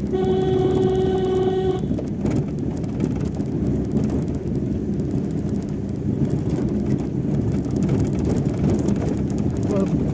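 A vehicle horn sounds one steady note for nearly two seconds at the start, over the continuous rumble of the vehicle's engine and tyres on a rough dirt road.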